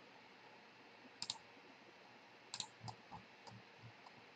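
Faint computer mouse button clicks over near-silent room tone: a quick pair about a second in, then four or five single clicks spread through the second half.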